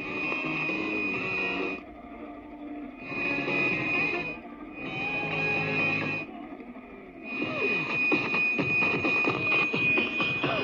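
Music from a medium-wave broadcast station played through a portable radio, with a steady high whistle over it. The signal cuts in and out several times, then comes in fuller from about seven seconds in.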